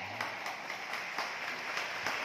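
Congregation applauding in a large, echoing church: a spread of hand claps with scattered sharper claps standing out, right after the preacher's "Amen".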